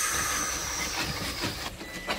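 Linguine in a starchy pasta-water and provolone sauce sizzling in a hot frying pan as it is tossed with tongs: a steady hiss that fades near the end.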